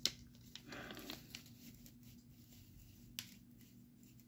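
Faint crinkling and rustling of a plastic candy wrapper being handled, with a sharp click at the start and another about three seconds in.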